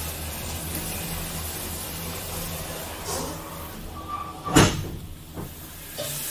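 Gondola cabin's automatic doors closing, shutting with one loud knock about four and a half seconds in and a smaller knock just after, over the steady hum of the station's drive machinery; a short high tone sounds just before the doors shut.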